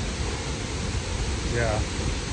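Steady rushing of a waterfall, with wind rumbling on the microphone underneath.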